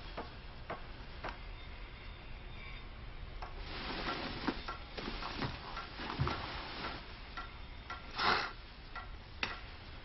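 Irregular knocks, taps and scrapes of work noise, with a louder rasping burst about eight seconds in.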